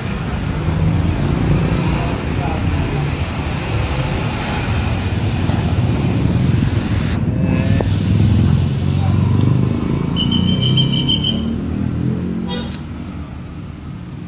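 Busy eatery ambience: many people talking at once in an indistinct murmur, with steady road traffic noise under it. About ten seconds in there is a short run of rapid high-pitched beeps.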